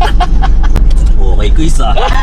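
Steady low rumble of a delivery truck's engine and road noise heard inside the cab while driving, with men's voices and laughter over it.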